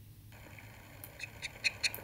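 Faint background hiss of a YouTube video's soundtrack cutting in abruptly as playback starts, with several short, quick ticks in the second half before the speaker on it begins.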